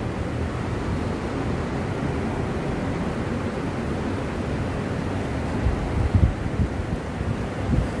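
Wind buffeting the microphone: a steady low noise with a few stronger gusts about six seconds in.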